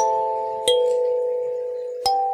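Kalimba music: plucked metal-tine notes that ring on and slowly die away, with a new note about every two-thirds of a second. Two notes are struck, one at the start and one about two-thirds of a second in.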